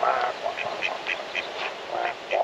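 Mallard duck quacking in a quick, regular series of short calls, about four a second, over a steady background hiss.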